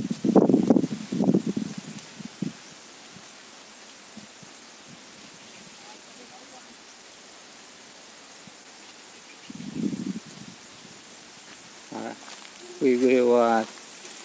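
Brief bursts of a voice near the start, again around ten seconds in and once more near the end, one of them rising in pitch. Between them is a steady faint hiss.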